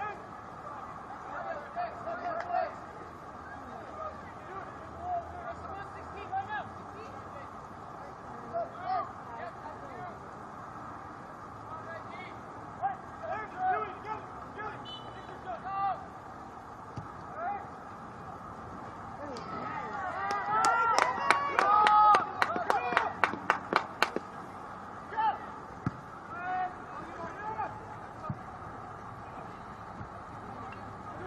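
Scattered shouts from players and spectators across an outdoor soccer field. About two-thirds of the way through, the crowd's yelling swells, joined by a quick run of sharp claps, about four a second, for three or four seconds.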